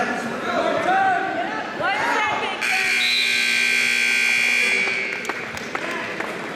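Gym scoreboard buzzer sounding one steady, harsh tone for about two seconds, starting a little over two seconds in, the signal that ends a wrestling period. Before it, voices are shouting.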